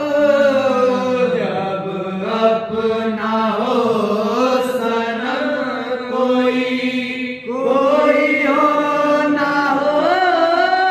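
Men singing a Sufi kalam into microphones in long, wavering held notes. The line breaks off briefly about seven seconds in, then a new phrase begins.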